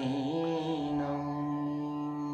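A male voice singing the last note of a Nepali song, wavering in a short ornament and then settling into one long held pitch, over a faint steady musical backing.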